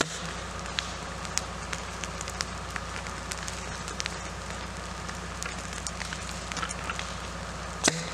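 Leaf-litter ground fire crackling, with sharp pops scattered throughout over a steady low hum. A louder sharp crack comes just before the end.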